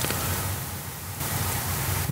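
A steady hiss with no pitch or rhythm, spread from low to very high, which turns slightly duller a little past halfway.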